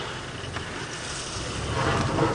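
Open safari vehicle driving slowly off-road through grass: steady engine and driving noise.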